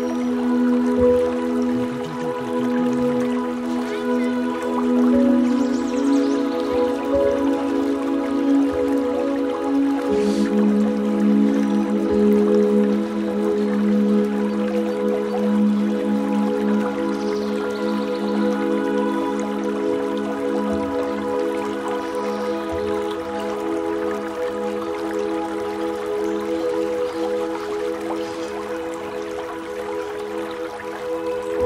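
Background music of long, held chords, moving to a new chord about ten seconds in.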